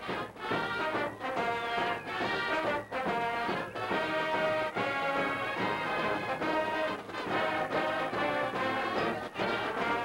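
High school marching band playing, with brass and sousaphones to the fore. The music comes in short phrases with brief breaks between them.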